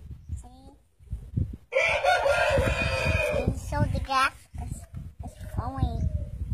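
A rooster crowing once, starting about two seconds in and lasting about two seconds.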